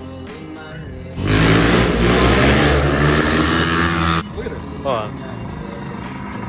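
Dirt bike engine revving loudly for about three seconds, starting and cutting off abruptly about a second in and near the end.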